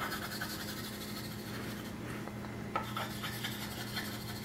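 White chalk scratching on a chalkboard as a zigzag line is drawn in quick back-and-forth strokes; soft and raspy.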